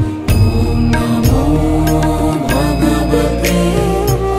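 Devotional music: a voice chanting a mantra over a steady low drone, with a few sharp struck accents.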